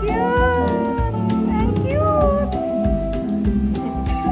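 Background music with a steady beat, with a high, cat-like meowing voice over it, typical of a cat-faced restaurant serving robot. The voice calls near the start and again about two seconds in.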